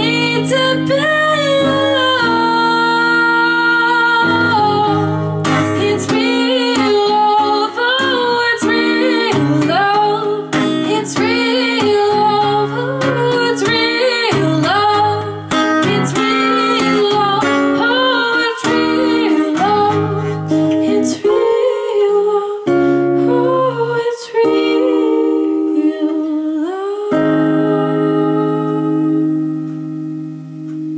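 A woman singing with a strummed acoustic guitar. Over the last few seconds a chord is held steadily as the song closes.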